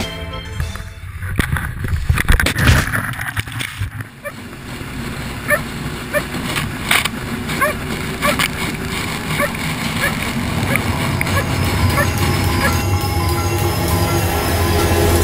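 Outboard motor running, with rushing water spray and short shouted voices over it. Music fades out just after the start and comes back near the end.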